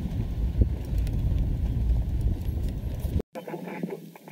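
Low rumble and buffeting from a moving safari vehicle's ride, with a few knocks, which cuts off abruptly a little over three seconds in.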